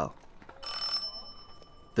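A doorbell rings once, a steady ringing tone lasting just over a second, starting about half a second in. It is a sound effect in a narrated story.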